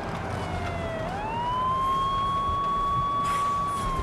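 Police car siren wailing. Its falling tone sweeps sharply up about a second in, holds high and steady, then starts to fall again near the end, over a car's low rumble.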